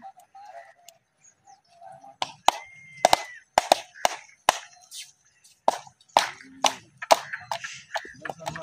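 A string of sharp clicks, about a dozen at irregular intervals, starting about two seconds in, with a brief whistle-like tone around three seconds.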